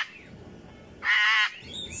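Cockatoo calling loudly close to the microphone: one short, wavering call about a second in, part of a run of calls repeated about every second and a half.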